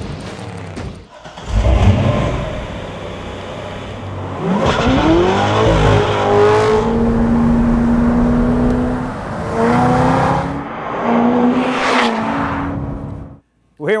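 A 2009 Corvette ZR1's supercharged LS9 V8 accelerating, its pitch rising several times with spells of steady running between. It cuts off suddenly near the end.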